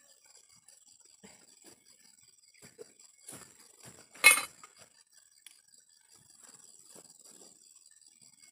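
Small knocks of things being handled, then one sharp clink a little over four seconds in, the loudest sound. A faint, steady high-pitched whine runs underneath.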